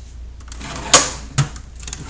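Metal drawer of a Craftsman rolling toolbox being shut and worked, giving a sharp metallic clack about a second in and a lighter click shortly after.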